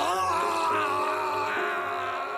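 A man's long, strained scream of pain, a single held cry that rises at first and then wavers, from a groin kick.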